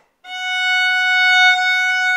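Violin playing one long, steady bowed note on a long bow stroke, starting about a quarter second in.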